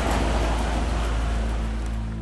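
Outdoor city-square ambience: an even wash of noise with a low, steady music note underneath. The ambience fades out near the end as the music takes over.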